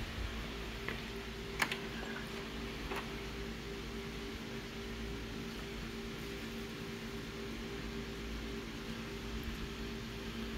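Office photocopier running with a steady fan hum made of a few constant tones over a low rumble, with a few light clicks in the first three seconds.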